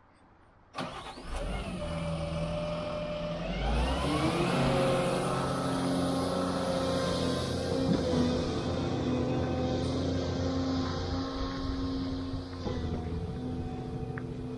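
An excavator's diesel engine starts up abruptly, its pitch rising over the next few seconds as it comes up to speed, then runs steadily.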